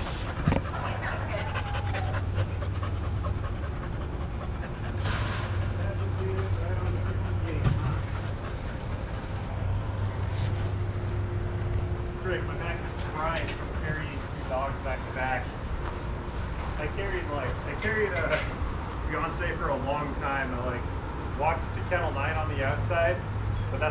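Several dogs panting, over a steady low hum.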